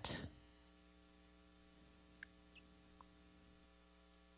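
Near silence: a faint steady electrical hum, with two tiny clicks partway through.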